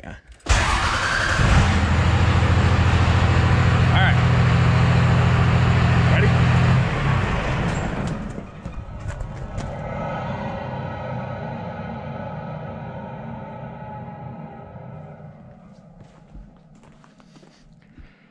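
12-valve Cummins diesel with compound turbos, revved hard through its straight 5-inch exhaust for about six seconds. The throttle is then let off and the turbos whine down, a falling pitch that fades over about eight seconds while the engine drops back to idle.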